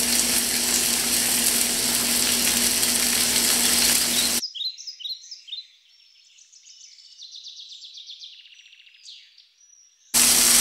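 Venison tenderloin searing in a very hot pan of olive oil: a steady sizzle that cuts off abruptly about four seconds in. After that, faint bird chirps and trills.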